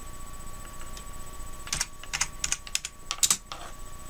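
Computer keyboard being typed on: a quick run of about ten keystrokes, starting a little under two seconds in.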